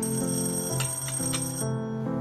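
Soft background music with a high, steady alarm tone ringing over it for about a second and a half, then stopping, with a few light clicks during it.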